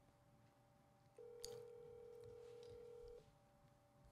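Telephone ringback tone heard faintly through a phone's speaker held to a microphone: one steady two-second ring starting about a second in, the sign that the called phone is ringing and has not been answered.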